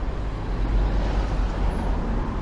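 Low, steady rumble of road traffic, swelling a little around the middle.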